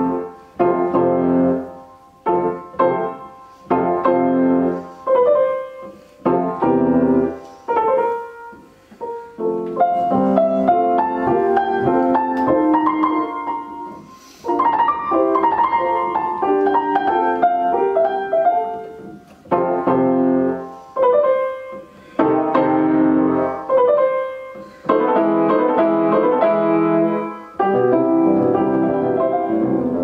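A Broadwood fortepiano from about the 1830s–40s being played. It opens with separate chords that ring and fade with short pauses between them, then moves into continuous running passages broken up by further groups of chords.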